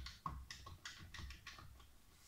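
Buttons of a small handheld electronic calculator being pressed in quick succession, a run of about seven faint plastic key clicks as a multiplication is keyed in.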